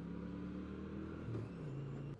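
Kawasaki VN800 Drifter's V-twin engine running steadily while riding, its pitch dipping briefly a little past the middle.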